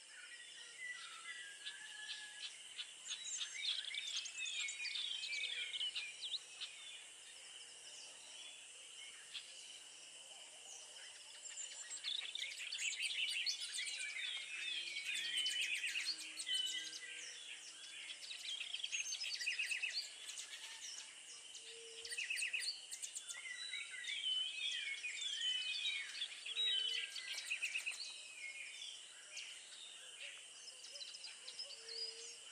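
Birds chirping and twittering in quick overlapping clusters of high calls that come and go in bursts, over a steady high-pitched drone.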